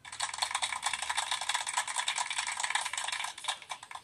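Rapid, dense rattling that starts abruptly and thins out just before four seconds.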